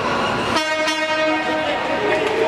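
A horn sounds once, a steady single-pitched blast lasting about a second, over the noise of the arena.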